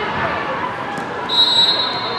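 Hall noise of an indoor soccer game: distant voices, one sharp knock about a second in, then a steady high-pitched whistle tone for the last half-second or so.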